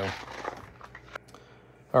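Handling noise from the recording phone being turned around: a soft rustle with a few faint clicks that dies away after about a second.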